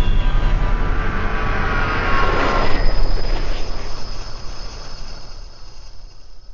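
Cinematic logo-intro sound effect: a deep rumble under several high, slowly falling ringing tones. It swells to a peak about halfway through, then fades away.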